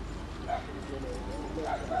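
Hoofbeats of a four-in-hand team pulling a carriage at speed, with short, sharp calls about half a second in and twice near the end.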